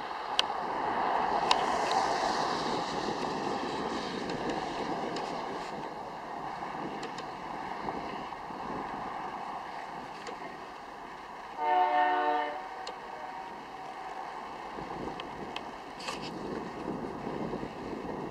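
Freight train passing at a distance, a steady noisy wash, with one short blast of the diesel locomotive's air horn about two-thirds of the way in. The blast is a chord of several notes lasting under a second.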